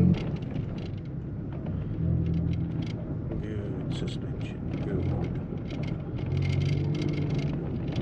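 Vehicle driving slowly on a dirt road, heard inside the cab: a steady low engine hum and tyre rumble that swells slightly twice, with scattered light rattles and knocks from the truck bouncing over the rough track.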